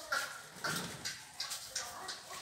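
Four short, sharp animal calls in quick succession, about two a second.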